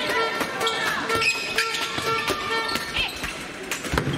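Indoor handball play on a sports hall floor: a run of short thuds and knocks from the ball and players' shoes, about two or three a second, with shouting voices and a louder thud near the end.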